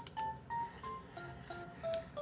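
Soft background music: a simple melody of short, pure, beep-like notes stepping up and down a few times a second, with faint clicks.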